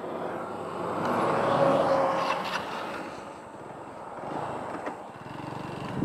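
A fire truck driving past on the road: its engine and tyre noise swells to a peak about two seconds in, then fades away.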